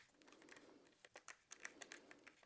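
Faint, scattered small clicks and ticks of a hand screwdriver turning the Phillips screws out of a crossbow's side plates, heard over a nearly silent room.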